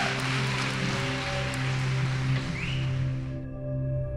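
Soft background music with sustained held tones, under audience applause that cuts off abruptly about three and a half seconds in.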